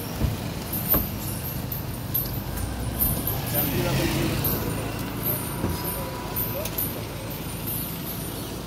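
Town street noise: a motor vehicle's engine rumbling past, swelling in the middle, with people's voices in the background and a sharp click about a second in.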